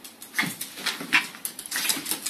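A Boston terrier and a small parrot scuffling on a hardwood floor: a quick run of short, sharp clicks and taps, with brief animal cries among them.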